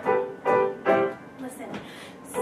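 A woman singing a musical-theatre song with piano accompaniment, in three short held notes in the first second and quieter after.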